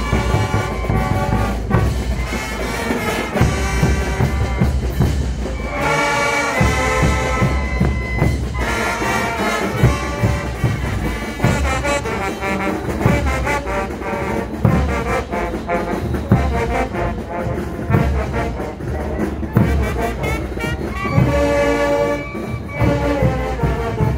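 Bolivian marching brass band playing live, with trumpets, baritone horns and tubas, and clarinets, over a steady drum beat.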